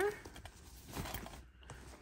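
Faint rustling and a few light ticks of hands opening a fabric handbag and brushing against the felt organizer and items inside.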